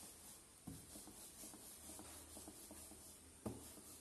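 Near silence with faint rubbing and small ticks, and two soft knocks, one just under a second in and a louder one near the end.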